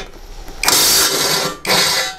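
Interskol GAU-350 18 V brushless cordless impact wrench undoing a nut on a steel plate, running in two bursts: a longer one about half a second in and a shorter one near the end. This is its loosening mode, which hits the nut at full force to break it free and then turns it out slowly.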